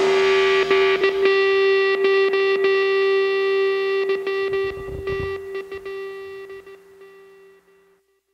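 Rock music soundtrack: a held electric guitar chord rings out and slowly fades away to silence near the end.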